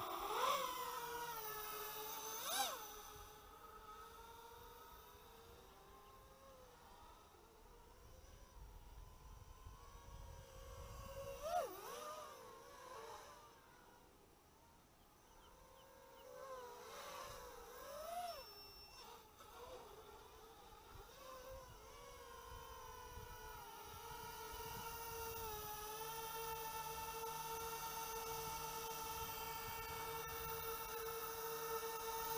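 Small quadcopter's 2400kv brushless motors and propellers whining, the pitch sweeping up at lift-off and rising and falling with the throttle. The whine fades as the quad flies away, then grows again into a steady hovering tone near the end.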